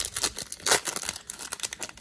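Foil wrapper of a Topps Chrome baseball card pack crinkling as it is torn open and handled. It makes a quick run of irregular crackles, with one louder crackle a little before the middle.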